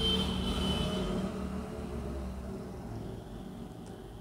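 Low background rumble of a passing vehicle, a little louder in the first two seconds or so and then fading.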